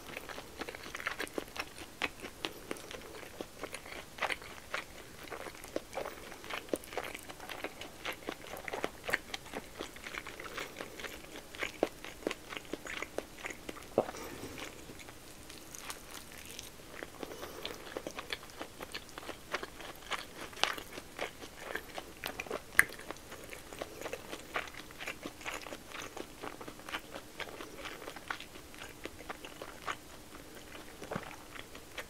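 Close-microphone eating sounds of a person biting and chewing a pork-belly-wrapped rice ball (nikumaki onigiri): a steady run of small wet mouth clicks and soft chewing, with a few louder bites.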